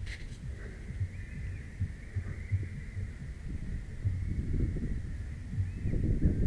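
Wind buffeting the microphone, an uneven low rumble with gusty bumps, while a faint thin high tone holds steady in the background.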